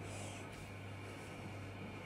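Quiet room tone: a steady low electrical hum under faint hiss, with no distinct event.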